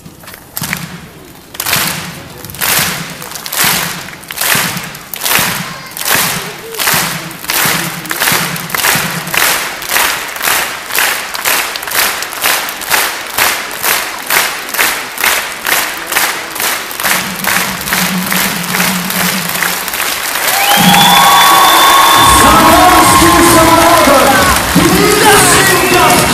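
A circus audience clapping in unison, a steady beat of about two claps a second that gradually speeds up. About 21 seconds in, band music starts loudly together with applause and cheering.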